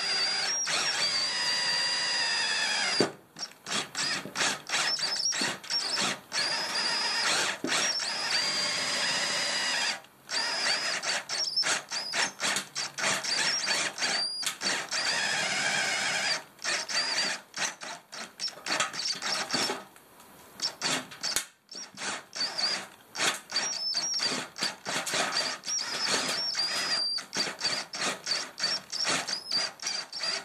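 Cordless drill turning a step drill bit through the thin sheet-metal front guard, opening a pilot hole out to 16 mm. The drill runs in a few held runs of two to three seconds, each with a high steady whine, between many short stop-start trigger pulses.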